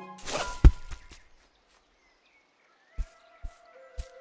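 Animated-film soundtrack: a short rushing sound ending in a heavy thump, then a hush. Near the end, soft low thuds come about every half second as sustained music notes come in.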